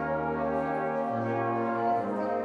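Brass band of cornets, horns and tuba playing held chords, with the bass note stepping down about halfway through.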